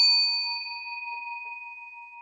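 Notification-bell 'ding' sound effect of a subscribe-button animation: a chime of a few clear tones, struck twice just before, ringing on and slowly fading.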